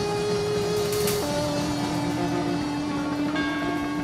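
Live rock band playing an instrumental passage with no vocals. A long sustained note holds over the band and steps down to a lower pitch about a second in.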